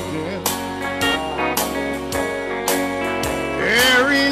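A live band plays an instrumental stretch of a song: electric guitar and keyboard chords over a steady beat of about two strokes a second. The singer's voice comes back in near the end.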